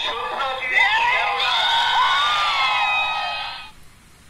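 A crowd of people shouting and cheering, many voices at once, heard through a television's speaker; it cuts off suddenly near the end.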